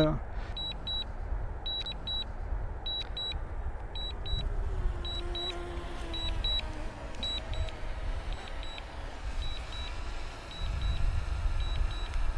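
DJI Mini 2 remote controller beeping its return-to-home alert: short high beeps in pairs, a pair about every second, while the drone flies itself back home. Wind rumbles low on the microphone underneath.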